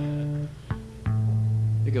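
Single notes plucked on guitar and bass strings, ringing out one after another, with a deep bass note struck about a second in that keeps ringing.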